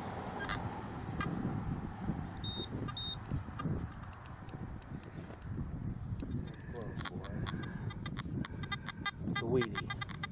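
A hand digger scraping and prying at a cut plug of sod and soil, with low scuffing and handling noise. About three seconds before the end, a metal detector starts a fast run of electronic chirps as it homes in on the buried coin.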